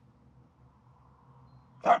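Finnish Spitz giving a single short, sharp play bark near the end.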